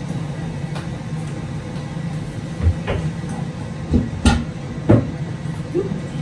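Kitchen clatter: a handful of scattered knocks and clinks of cookware being handled, the loudest two a little past the middle, over a steady low hum.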